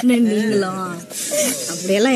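People talking, with a brief hiss about a second in.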